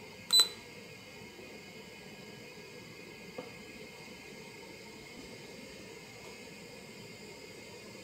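A short, high electronic beep about a third of a second in, the signal of the handheld 3D scanner starting a scan. It is followed by a faint steady hum, with one small click near the middle.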